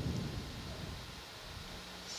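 A brief low rumble that fades within about half a second, leaving steady background hiss with a faint low hum.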